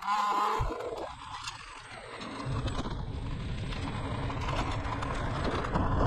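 Low rumble of a scooter moving along a street, with wind on the microphone and wheels on the road. It builds steadily louder after about two seconds, after a brief higher pitched sound at the start.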